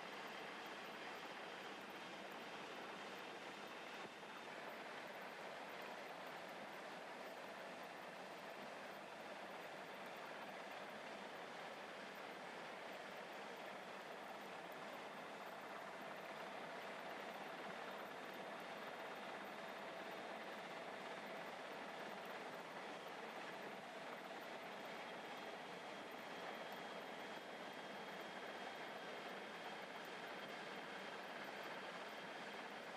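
Steady, even rushing noise with a faint steady hum through the middle, and no distinct events.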